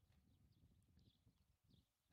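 Near silence: faint low background rumble.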